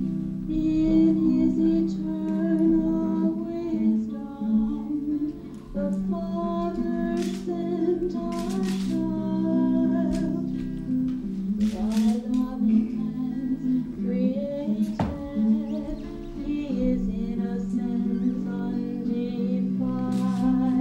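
A woman singing a song to acoustic guitar accompaniment.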